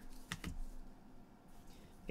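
Trading cards being flipped through in gloved hands: a few light clicks of card edges in quick succession.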